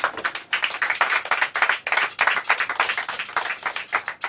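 A small audience clapping at the end of a song, with many quick claps that stay distinct from one another.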